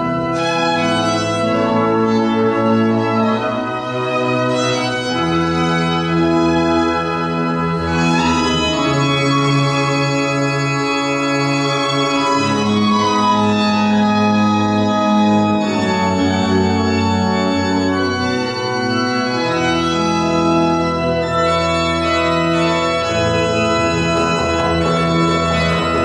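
Pipe organ playing slow, sustained chords, its bass notes changing every few seconds, with a violin playing over it.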